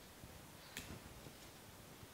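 Near silence with a faint, sharp click about three-quarters of a second in and a few softer ticks: short wax flower sprigs being snapped off the stem by hand.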